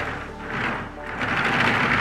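A large homemade bearing under a 3D-printed plastic tank turret, turned by hand, giving a rough rolling noise that swells and fades twice as the turret swings one way and then back. It does not run smoothly.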